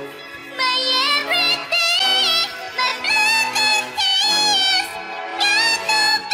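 A pop song's lead vocal, pitch-shifted up to a high, cute-sounding voice, sung in short phrases over a backing track.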